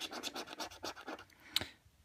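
A penny coin scraping the latex coating off a paper scratchcard in quick repeated strokes. The strokes stop after about a second and a half, followed by a single sharp click.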